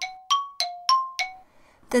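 A short chime jingle: five bell-like struck notes alternating between two pitches, about three a second, each ringing briefly and dying away about one and a half seconds in.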